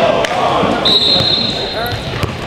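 Basketball game play on a gym court: a basketball bouncing, sneakers squeaking on the floor and players' voices, echoing in the hall. A steady high tone comes in about halfway through and holds for about a second.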